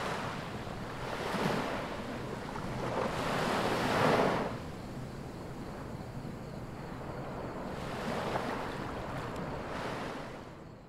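Sea waves washing onto the shore, swelling and falling back about three times, the loudest near four seconds in.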